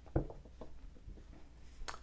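Tarot cards being handled on a cloth-covered table: a faint tap just after the start, a few light ticks over the next half second, and a sharp click near the end.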